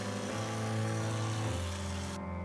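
Background music over the steady running of a pole hedge trimmer cutting a hedge.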